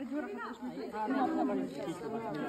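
Several people talking and chattering at once; no other sound stands out.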